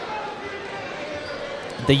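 Basketball being dribbled on a hardwood gym floor, over a steady background murmur in the gym.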